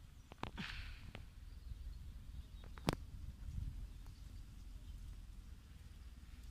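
Faint outdoor ambience: a steady low rumble with a few light clicks and a brief rustle early on, and one sharper click about three seconds in.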